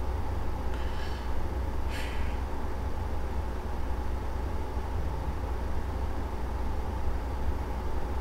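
Steady low hum with a brief hiss about two seconds in.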